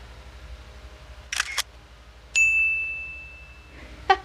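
A camera shutter clicking twice in quick succession, then a single high, clear ding that rings on and fades over about a second and a half.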